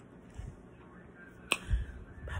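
A single sharp click about one and a half seconds in, followed by a brief low thump.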